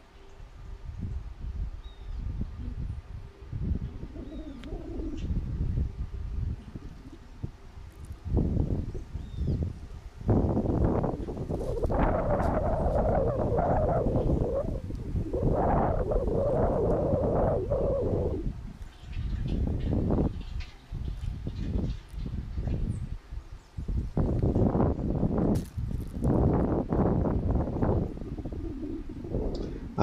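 Wind buffeting an unshielded camera microphone in gusts, like someone blowing into the mic, strongest in a long surge between about 10 and 18 seconds.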